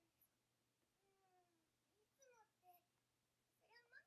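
Near silence, with very faint high-pitched talking from the anime's dialogue, starting about a second in.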